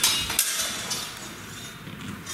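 Sword blades clashing as they bind in a sword-and-buckler exchange: a sharp strike at the start and another about half a second in, each leaving a metallic ring that fades.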